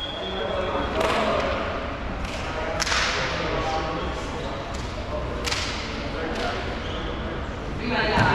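A volleyball smacking three times, about one, three and five and a half seconds in, each hit ringing out in a reverberant gym, over a low murmur of players' voices.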